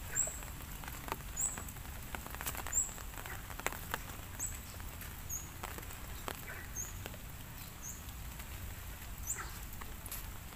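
A small bird calling in short, high chirps, roughly once a second, over a faint outdoor background with scattered light taps.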